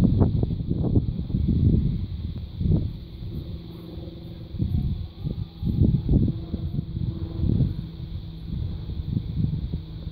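Wind buffeting the microphone in irregular gusts of low rumble, with faint steady tones showing through in a lull mid-way.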